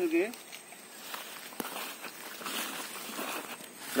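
Quiet rustling and footsteps in grass and weeds, with one sharp click about one and a half seconds in.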